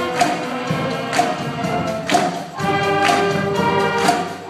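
School concert band playing: sustained wind-instrument chords over a percussion hit about once a second.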